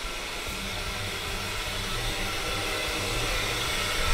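Hot water pouring steadily from a bathtub's waterfall spout into a full tub, an even rushing with a low hum beneath it, growing slightly louder.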